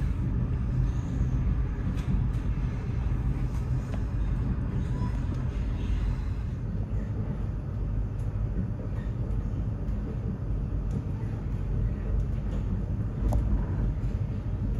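Steady low rumble of a Eurotunnel Shuttle train rolling along, heard from inside its carriage, with a few faint clicks along the way.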